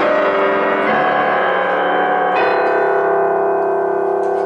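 Grand piano played solo: dense, ringing chords. A new chord is struck about two and a half seconds in and held.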